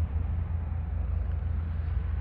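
Wind buffeting the phone's microphone in a low, fluttering rumble, over a steady distant roar of aircraft engines from across the airfield.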